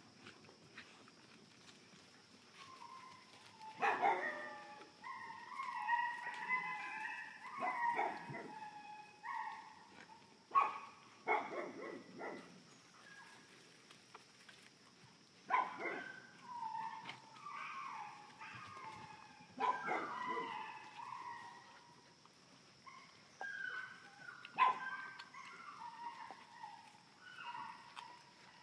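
Puppies yapping and barking in play, in several clusters of short, high calls separated by quieter gaps. A faint steady high hum runs underneath.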